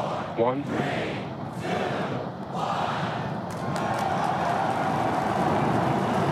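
Starship's Super Heavy booster, with its 33 Raptor engines, igniting and lifting off: a steady, dense wall of rocket noise that sets in about a second after the countdown reaches one, with a crowd cheering and shouting over it.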